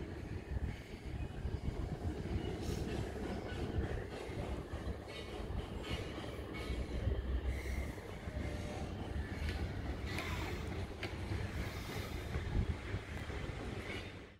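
Steady low rumble of outdoor background noise, with faint scattered clicks and hiss.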